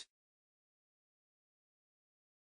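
Near silence: dead digital silence in a pause between spoken words.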